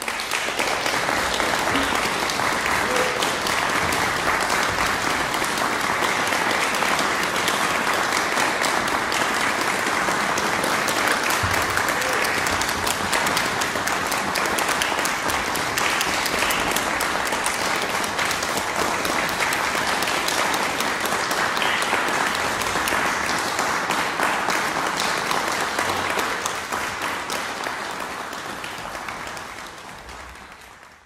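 Audience applauding, starting suddenly, holding steady, then dying away near the end.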